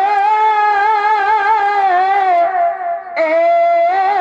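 Shehnai playing the dance accompaniment: long held notes that waver and bend in pitch, with a brief break about three seconds in before the next note starts.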